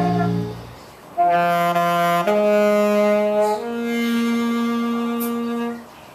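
A band's held closing chord dies away, then a lone saxophone plays three long notes, each a step higher than the last, with the final note cut off near the end.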